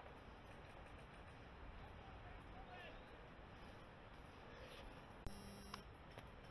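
Faint outdoor background close to silence. Near the end comes a sharp snap with a short ringing twang after it, then a smaller click, as of a spring-powered airsoft sniper rifle, the Silverback Tac41, firing.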